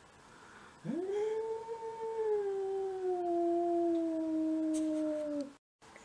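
Tabby-and-white domestic cat giving one long, low yowl at another cat on the other side of a glass door: a territorial threat call. It sweeps up at the start, then holds for about four and a half seconds while slowly dropping in pitch, and stops abruptly.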